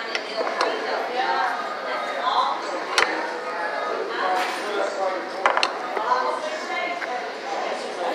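Background chatter of a busy restaurant dining room, with sharp clicks of cutlery on a plate about three seconds in and twice more around five and a half seconds.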